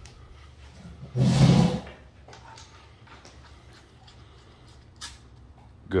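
Parts of an IWI UZI Pro pistol slid together on its rail during reassembly: one scraping slide of under a second, about a second in, then a faint click near the end.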